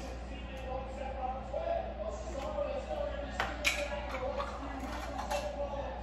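A faint, indistinct voice with a couple of light clicks a little past the middle, over kitchen room tone.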